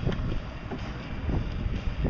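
Wind buffeting the microphone in a series of short low gusts over a low steady rumble, out on the open deck of a bass boat.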